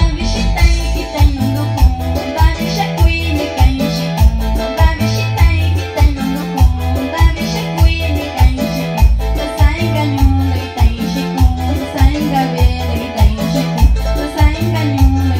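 Live band music played on Korg keyboards, with an evenly pulsing bass beat and a woman singing over it.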